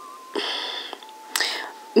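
Soft breathy whispered speech: two short hushed bursts without full voice, over a faint steady high whine.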